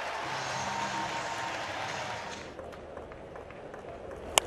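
Ballpark crowd cheering and applauding a home-team double play, dying away about two and a half seconds in.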